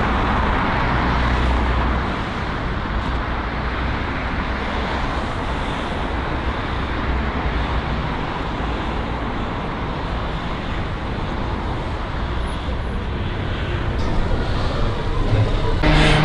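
Steady urban road traffic noise: a constant hiss and low rumble of cars on the street, with no single vehicle standing out.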